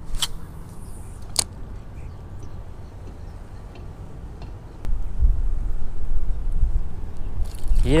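Two sharp clicks, about a quarter second and a second and a half in, then from about five seconds a steady low rumble of wind buffeting the microphone.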